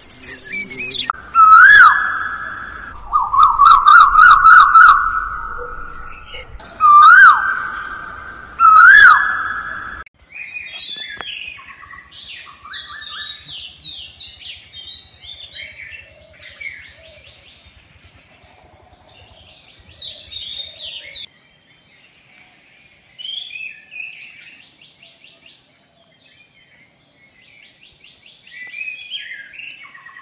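Loud bird calls, repeated clear notes each with a quick upward hook, broken by a run of rapid repeated notes. About ten seconds in they give way to a quieter mix of scattered chirping birds over a steady high hiss.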